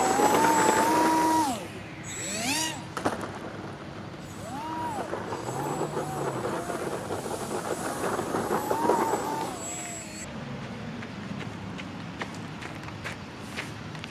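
The motor and propeller of a radio-controlled ground-effect model run up with a rising whine, hold for about a second and a half, then throttle back. The throttle is then opened and closed in several short rising-and-falling bursts until the motor stops about ten seconds in.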